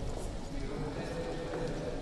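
Voices singing slow, held notes in a chant or hymn, a sung part of the Mass.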